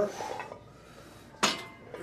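Weight plates on a loaded barbell clank once, sharply and metallically, about one and a half seconds in, during a bench press repetition.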